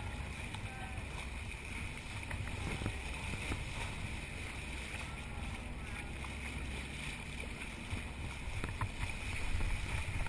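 Steady rush of water and wind at the bow of a moving boat as it cuts through the sea, with a low rumble underneath and a few faint ticks.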